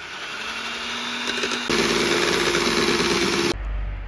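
Electric hand mixer running with its beaters in egg yolks and sugar: a steady motor hum that steps up to a higher, louder speed about halfway through, then cuts off shortly before the end.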